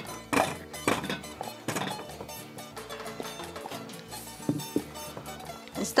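Peeled potatoes dropped one at a time into a stainless steel pot, giving several dull knocks, most in the first two seconds and a couple more near the end, over background music.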